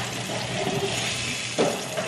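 Salmon fillets sizzling in butter in a frying pan, a steady hiss, with a short knock about one and a half seconds in as a wooden spatula works under a fillet.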